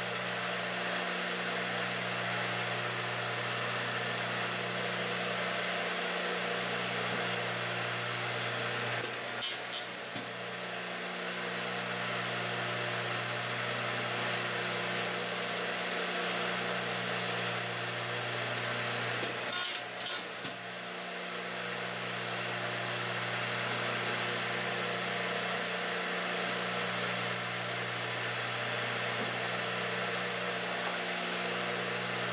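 Craftsman 12-inch radial arm saw running at speed with a steady whirring hum. Two brief sharper noises break in at about nine and twenty seconds.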